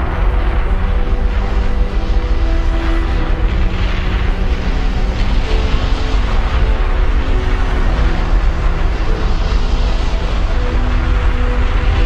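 Background music of long held notes that change every second or two, over a steady deep rumble.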